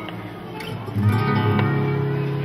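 Flamenco guitar strumming and picking the opening of a tanguillo, getting louder about a second in.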